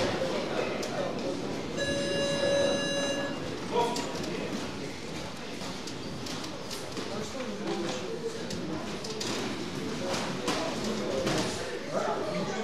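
An electronic round buzzer sounds one steady, buzzy tone for about a second and a half near the start, marking the start of the round in a boxing ring. After it, voices echo through a large gym hall, with short knocks as the boxers exchange punches.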